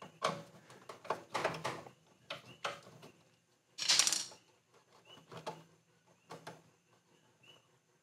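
Screwdriver turning a screw terminal on a furnace control board, making a series of small, irregular metallic clicks and scrapes. One longer scraping rustle comes about four seconds in, as the red thermostat wire is worked loose from the terminal.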